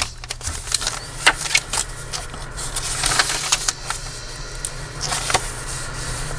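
Paper and cardstock pages of a handmade junk journal being handled and turned, rustling with scattered light taps and clicks, over a steady low hum.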